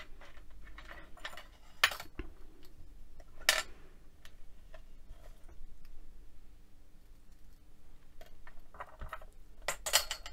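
Light clinks and taps of a metal file and an oval stainless-steel soap bar being handled and set down on a glass craft mat, with two sharper knocks about two and three and a half seconds in and another near the end.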